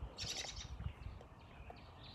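A bird's short high chirping burst in the first half second, then a few faint ticks over a low rumble.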